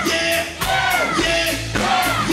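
Live rock band playing at full volume, with short sung or chanted vocal lines coming about twice a second over the band.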